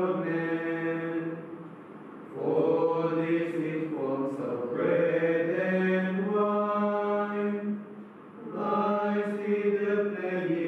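A small group of men chanting a psalm together, reciting on long held notes that step to a new pitch now and then, with short pauses for breath about two seconds in and again near the end.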